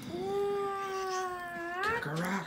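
A young child's high-pitched voice holding one long wordless note for nearly two seconds, sagging slightly in pitch and then sweeping upward at the end.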